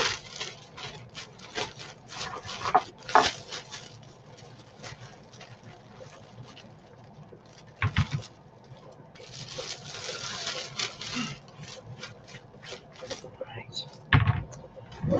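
Shredded coleslaw vegetables rustling as they are tipped and pushed into a large plastic storage bag. Scattered light clicks run through it, with one thump about eight seconds in and a denser stretch of rustling from about nine to eleven seconds.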